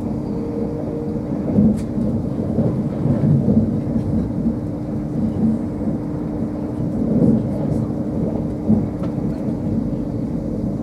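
Cabin noise inside an LNER Azuma Class 801 electric train at speed: a steady low rumble of wheels on rail under a constant hum, swelling louder a few times as it runs over the track.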